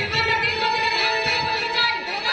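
A woman singing a Bengali village-theatre song, her voice held on long notes over instrumental backing and a steady drum beat.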